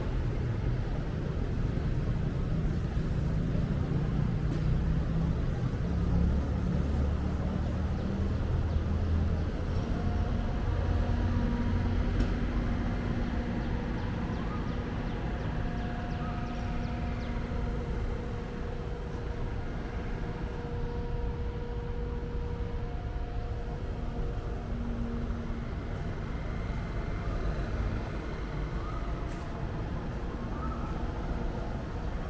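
Street traffic below the rooftop: a steady hum of vehicle engines, with a heavier engine rumble that is loudest in the first ten seconds or so and then eases off.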